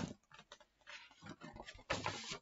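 Faint rustling and small clicks of a picture book's pages being handled as a page is turned, with a short louder swish near the end.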